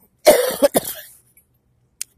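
A person coughing: a short fit of a few coughs lasting under a second, starting about a quarter second in.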